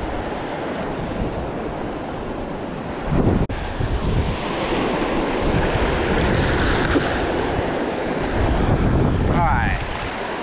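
Surf washing up the beach, with wind buffeting the microphone in gusts. There is a sudden brief dip in the sound about three and a half seconds in.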